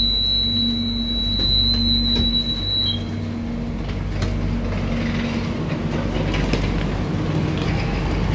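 A stopped electric airport train hums steadily at the platform, with a steady high electronic tone inside the carriage that stops about three seconds in. After that the sound opens out into platform bustle with light footsteps as passengers step off.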